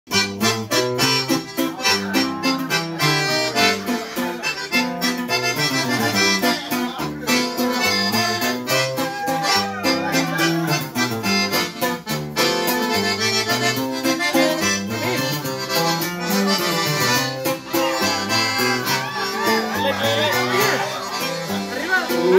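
Live accordion and acoustic guitar duo playing an instrumental intro in regional Mexican style: the accordion carries the melody over steady strummed guitar with a moving bass line.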